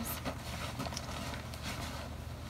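Rustling and soft knocks of items being handled and moved about, several short strokes over a low steady hum.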